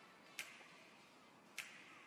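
Near silence broken by two faint, brief swish sound effects, about half a second in and near the end.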